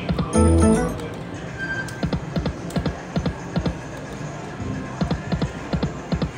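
Dancing Drums slot machine playing its game music and spin sound effects as the reels spin. A loud chiming tone burst comes just under a second in, followed by a steady patter of short clicks.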